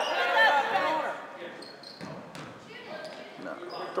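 A basketball being dribbled on a wooden gym floor, a run of bounces, with voices shouting in the first second.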